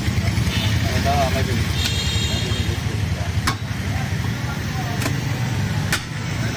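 A few sharp knocks of a butcher's cleaver striking a wooden chopping block, over a steady low engine rumble and people talking.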